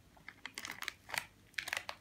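Irregular sharp clicks and light crinkling as a lollipop is stirred in a small paper packet of popping-candy sugar.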